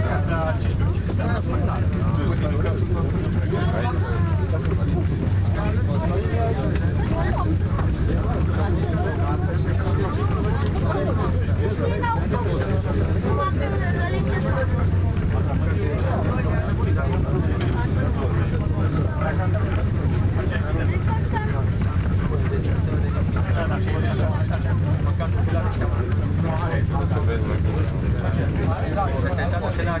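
Indistinct chatter of several people inside a gondola lift cabin, over a steady low hum of the gondola running up the cable.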